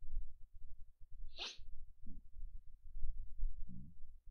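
A man's short, breathy nasal burst close to the microphone about a second and a half in, followed by two faint, low murmurs from the voice.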